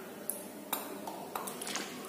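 A few light clicks and taps from a plastic flip-top bottle being handled over a mixing bowl.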